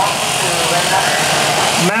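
Electric sheep shears running with a steady hum while the comb and cutter clip wool from a sheep's belly.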